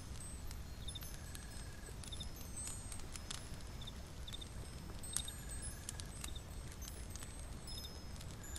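Layered fantasy-forest ambience: a steady low rumble under scattered high, chime-like tinkling tones. A short double chirp repeats about once a second, a brief trill comes twice, and there are occasional sharp clicks, the loudest about five seconds in.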